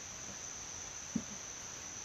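Insects chirring outdoors: a faint, steady, high-pitched drone, with one brief soft low sound a little over a second in.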